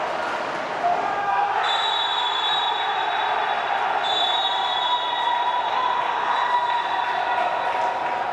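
Many overlapping voices of players and staff shouting and celebrating on the pitch after a match win, no words clear, with a steady high-pitched tone joining in about one and a half seconds in.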